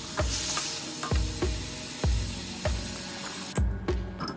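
Pork knuckle sizzling and being stirred in a hot wok, under background music with a steady beat. The sizzle cuts off shortly before the end.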